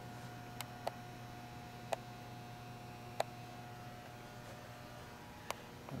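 Quiet room tone: a steady low hum with five short, sharp clicks scattered through it, the first about half a second in and the last near the end.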